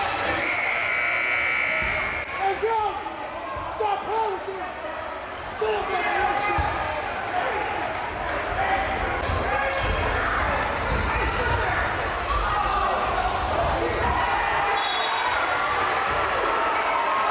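Basketball bouncing on a hardwood gym floor, with voices calling out and talking in an echoing gymnasium. A steady high tone sounds for about the first two seconds.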